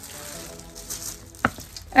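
Paper shopping bag and plastic wrapping rustling and crinkling as an item is pulled out of the bag, with one sharp click about one and a half seconds in.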